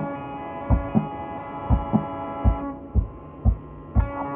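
Raw, muffled tape recording of a black metal band rehearsal: a slow drum beat of low, deep hits, several in close pairs like a heartbeat, under a held chord that thins out a little under three seconds in.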